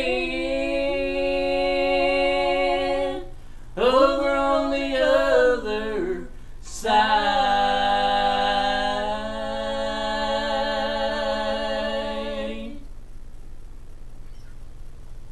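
A woman and a man singing the drawn-out final line of a bluegrass gospel song in two-part harmony: a held phrase, a shorter phrase, then a long final note held for about six seconds that stops cleanly about a second before the end.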